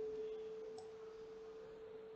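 A faint, steady hum on a single pitch, one pure tone held without change.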